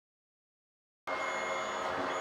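Silence, then about a second in a steady room hum starts suddenly, carrying a few high, thin, unchanging whines.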